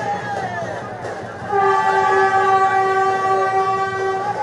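Vande Bharat Express train sounding its horn, a steady chord of several tones held together, starting about a second and a half in and lasting nearly three seconds. Before and under it, a crowd shouts on the platform.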